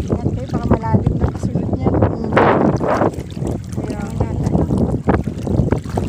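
Wind buffeting the microphone and water sloshing around legs wading through shallow sea water, with a louder splash about two and a half seconds in.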